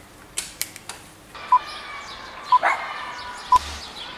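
Three short, high electronic beeps, evenly one second apart, over a steady hiss, with a couple of sharp clicks just before them.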